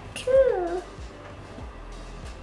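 A young child's short, high-pitched vocal sound, about half a second long near the start, its pitch rising then falling.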